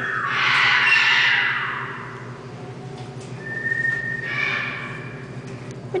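Scarlet macaw giving a long, loud, harsh squawk over the first two seconds, followed by a short thin whistle-like note and a quieter call near the end.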